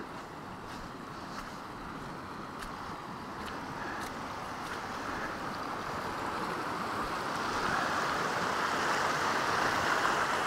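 Rushing water of a moorland burn running high, too deep to ford, growing steadily louder as it is approached.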